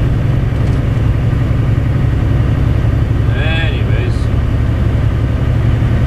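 Steady low drone inside a semi-truck's cab while it cruises along the highway: the diesel engine and road noise. A short bit of voice is heard about halfway through.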